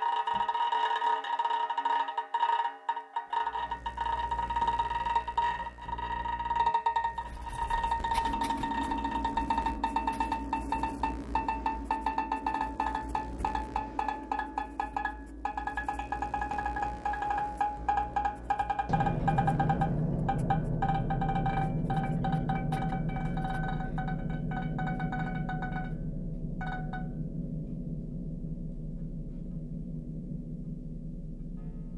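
Free improvised music for bowed banjo and laptop electronics: sustained high ringing tones and dense crackling clicks over a low electronic drone. The drone thickens about two-thirds of the way through, and the high tones stop near the end, leaving the low drone.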